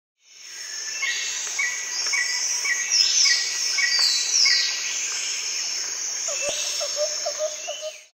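Rainforest ambience fading in: a steady high-pitched insect drone with birds calling over it, one short call repeating about every half second, a few falling whistles, and a lower run of chirps near the end.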